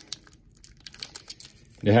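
Foil trading-card pack crinkling faintly as it is pulled open by hand, an irregular scatter of small crackles.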